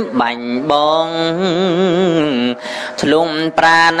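A solo voice chanting in long, held notes that waver up and down in pitch, a melismatic Buddhist chant, broken by short pauses for breath about two and a half and three seconds in.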